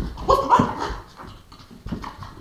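A man imitating a dog, making a short run of loud, dog-like vocal sounds in the first second, then a brief thump near the end.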